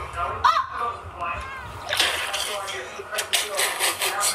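Children's voices from a home-video clip playing back, with a few sharp knocks.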